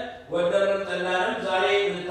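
A man's voice intoning in Amharic in long, level held tones, chant-like rather than spoken, with a slight rise in pitch near the end.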